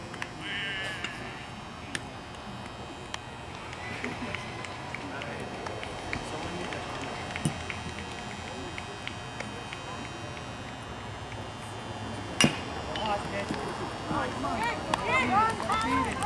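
Low background chatter of spectators, then about twelve seconds in a single sharp crack of a bat hitting the pitched ball. Spectators and players shout and call out right after.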